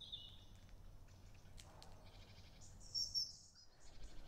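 Faint outdoor ambience with small birds chirping. There are short high calls at the start and a louder flurry of chirps about three seconds in.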